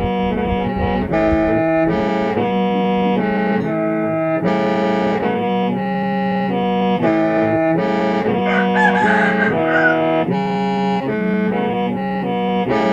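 Hmong qeej, a free-reed bamboo mouth organ, played solo in a 'kho siab' (lonely-heart) tune. A steady low drone sounds under reed chords that shift every half second or so.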